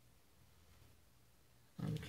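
Near silence: room tone with a faint low hum. A woman's voice starts near the end.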